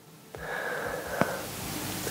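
A man's long breath, drawn in just before he speaks, with a faint whistling tone in it and one small mouth click about midway.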